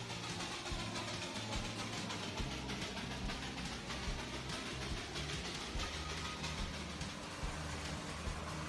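Darjeeling Himalayan Railway steam toy train running, a steady mechanical noise, with background music underneath.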